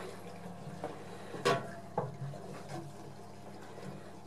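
A black-and-white dairy cow drinking water from a plastic barrel: quiet sucking and sloshing of water with a few short sounds, the loudest about a second and a half in.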